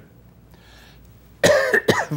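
A man gives a short cough into his fist about a second and a half in, after a brief quiet pause.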